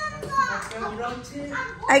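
Speech: voices talking, among them a child's, with no other sound standing out.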